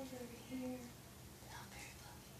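A woman speaking quietly, half in a whisper, in short phrases.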